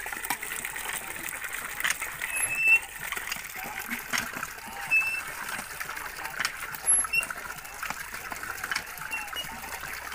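Water running from a hand pump's spout into a plastic bucket, with small splashes and sloshing as raw chicken pieces are washed by hand in a basin of water.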